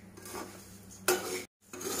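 A spatula stirring a dry, crisp mix of fried flattened rice, fox nuts and peanuts in a pan: faint rustling and scraping, with one louder scrape about a second in. The sound then cuts out completely for a moment.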